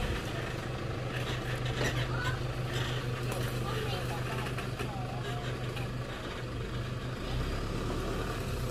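Toyota Hilux Vigo pickup's engine running with a steady low hum.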